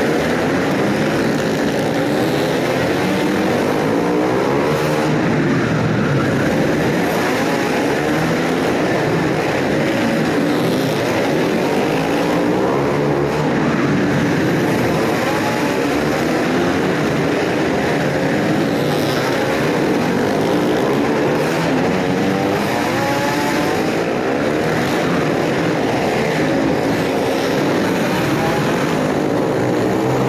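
A pack of short-track racing motorcycles circulating together, several engines overlapping and rising and falling in pitch as the riders accelerate and back off around the oval. The sound is heard inside a large enclosed hall.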